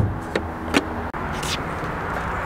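Sharp plastic-and-metal clicks of a car's hood release lever being pulled and the hood latch letting go: the loudest right at the start, then three lighter clicks over about a second and a half, over steady outdoor background noise.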